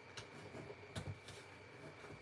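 Faint scraping and a few light taps of a bone folder burnishing a fold in cardstock, the clearest tap about a second in.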